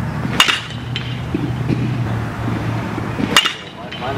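A baseball bat hitting pitched balls twice in batting practice, two sharp cracks about three seconds apart, each with a brief ring. A steady low hum runs underneath.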